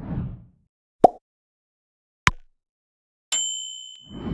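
Subscribe-animation sound effects: a short low whoosh, two sharp mouse-style clicks about a second apart, then a bright notification-bell ding that rings and fades near the end.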